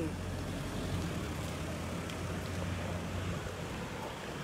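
Steady road traffic noise, a low even rumble with a light hiss.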